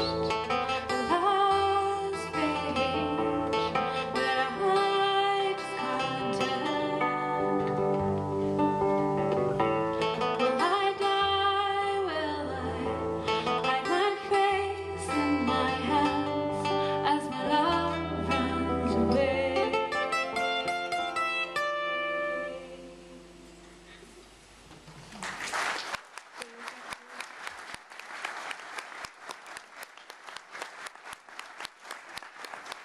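Two acoustic guitars playing a folk song with a woman singing, ending about 22 seconds in as the last chord dies away. Audience applause starts a few seconds later and runs on.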